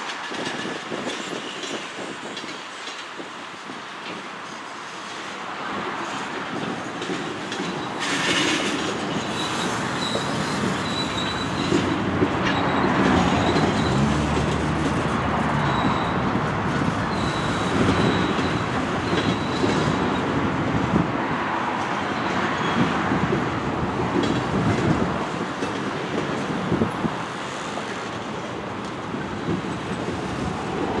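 Freight cars of a long mixed freight train rolling past, their steel wheels clattering steadily over the rails, with a faint high wheel squeal coming and going. The rumble grows louder about ten seconds in.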